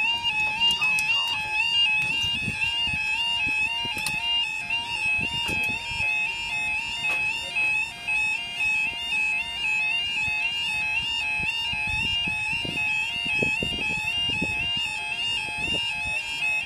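UK level crossing audible warning, a two-tone 'yodel' alarm, warbling rapidly and steadily between a low and a high tone while the road barriers lower.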